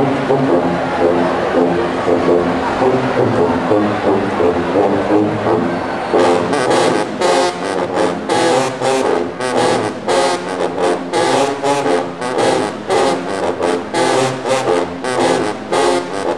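Marching band sousaphone section playing a rhythmic low brass riff; from about six seconds in, the playing turns to short, clipped stabs.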